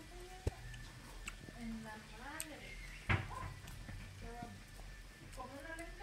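Quiet voices talking in snatches, with two sharp knocks, one about half a second in and one about three seconds in.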